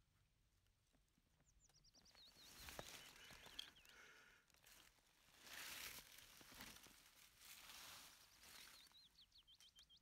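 Faint woodland birdsong: a bird sings a quick run of high, falling chirps about a second and a half in, and again near the end, with a soft rustle in the middle.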